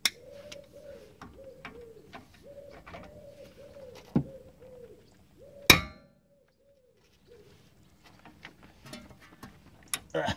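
Metal tools clinking and clanging as a socket on an extension bar is fitted to a rusty suspension bolt, with the loudest clang about five and a half seconds in. Under it, a pigeon coos over and over through the first six seconds.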